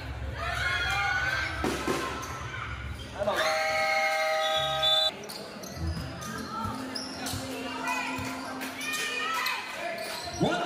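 A basketball bouncing on a court during a game, with voices around it. About midway a held tone lasts a second and a half and cuts off abruptly.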